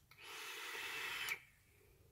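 A person's breath on a vape hit: a breathy rush of air through the mod's dripper atomizer lasting about a second, then cutting off suddenly.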